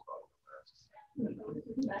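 Indistinct voices in a courtroom heard over a compressed video-call feed: faint scattered murmurs, then a man's voice starting up about a second in.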